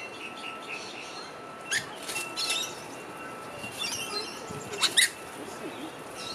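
Small birds chirping: four quick bursts of sharp, high, falling chirps, the last one the loudest, over a faint steady high tone.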